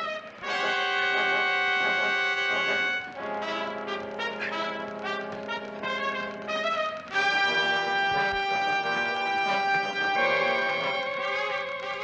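Dramatic orchestral TV score led by brass: long held brass chords that change twice, with a wavering passage in the middle chord.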